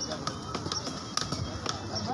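Heavy fish-cutting knife knocking on a wooden chopping block as a cobia is cut, about four sharp knocks roughly half a second apart, the one a little past halfway the loudest. Voices chatter in the background.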